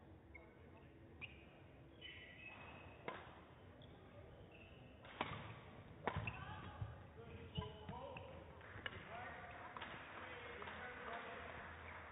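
Badminton racket hitting the shuttlecock during a rally: about seven faint, sharp hits, a second or two apart.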